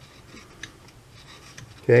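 Low room noise with a few faint, light clicks of metal carburetor parts and a pick being handled, then a man saying "okay" at the very end.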